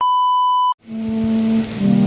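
TV colour-bars test-pattern tone: one steady high beep lasting under a second that cuts off abruptly. After a short gap, music with held tones fades in over a steady hiss.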